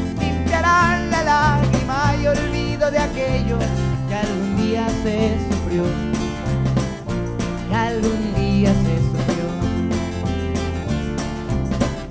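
Live band playing an instrumental passage with no singing: guitar and bass under a lead melody, with a frame drum and its jingles struck by hand and a keyboard.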